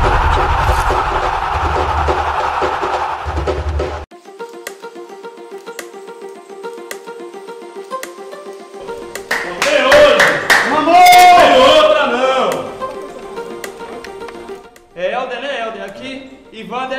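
Intro music: a loud, bass-heavy opening that cuts off abruptly about four seconds in, followed by a quieter track of held notes with a light ticking beat. Loud voices come over the music for a few seconds in the middle, and a man starts speaking near the end.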